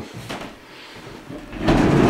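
Quiet room tone, then a rough scraping noise with a low rumble starting about one and a half seconds in.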